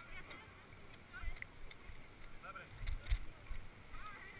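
A few dull thumps and knocks from handling an inflatable kayak and paddle at the water's edge, the loudest pair about three seconds in, with faint distant voices.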